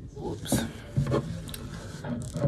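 Paper napkin rustling and rubbing as a spill is wiped up, in a few short separate strokes.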